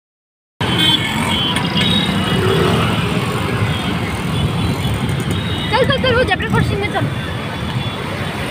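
Heavy road traffic on a rain-soaked city street: vehicle engines and the noise of tyres on the wet road. It cuts in suddenly about half a second in, after silence, and runs steadily.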